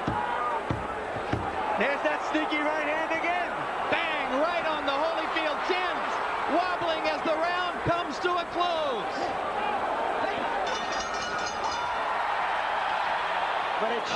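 Arena crowd shouting and yelling throughout a heavyweight boxing exchange, with dull thuds of gloved punches landing, several in the first second or so and another about eight seconds in. Near the end, the ring bell is struck in a quick run of clangs, ending the round.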